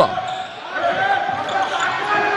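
A handball bouncing on a wooden court floor, with faint voices in the background.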